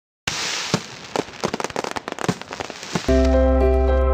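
Fireworks crackling and popping, a rapid run of sharp cracks over a hiss. About three seconds in it cuts off abruptly and music begins, with held chords over a steady low note.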